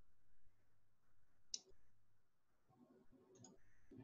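Near silence: faint room tone with one short sharp click about one and a half seconds in and a weaker click near the end.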